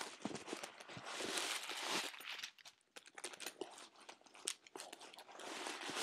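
Paper stuffing crinkling and rustling as it is handled and pulled out of a stiff handbag. There is a dense rustle for the first two seconds, then scattered sharp crackles, then more rustling near the end.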